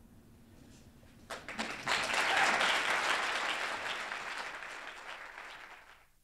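Audience applauding. The clapping starts about a second in, swells quickly to its loudest, then gradually dies away toward the end.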